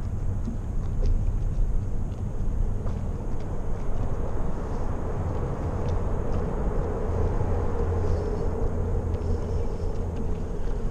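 Steady low rumble of wind and water on an open fishing boat. A motor hum grows stronger in the second half.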